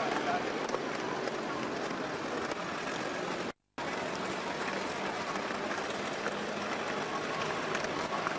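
Busy city street ambience: a steady wash of traffic and crowd noise with people's voices talking, recorded on a camcorder microphone. About three and a half seconds in, the sound cuts out completely for a fraction of a second, then resumes.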